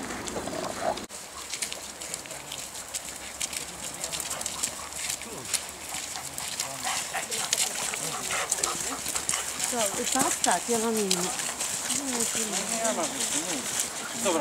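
Footsteps of walkers and dogs crunching on a wet gravel track, a stream of irregular sharp clicks and scuffs as the group passes.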